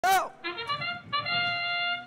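Recorded trumpet bugle-call fanfare signalling the start of a robotics match: a few quick rising notes, then one long held note. A brief loud voice is heard at the very start.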